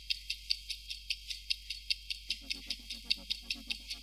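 Countdown ticking sound effect for thinking time: even, high-pitched ticks about five a second over a faint steady tone. A lower pulsing beat joins about halfway through.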